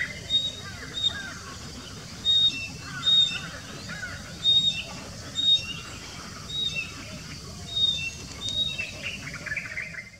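Birds chirping outdoors: a short high chirp repeated about once a second, sometimes answered by a slightly lower note, with other fainter calls in between.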